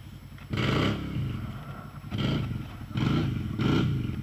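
ATV engine revving in repeated bursts, about four surges over a steady low running note, as the quad sits bogged in a deep mud rut.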